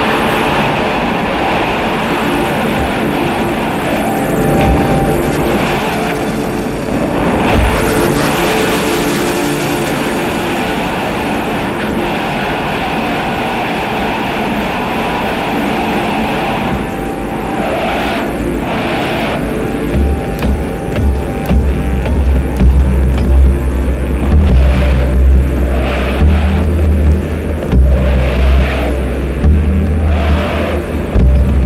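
Experimental electronic sound made from piezoelectric contact sensors under a metal floor, processed and modulated: a dense, noisy drone with a few held tones. About two-thirds of the way through, heavy bass notes come in, stepping in pitch every second or so.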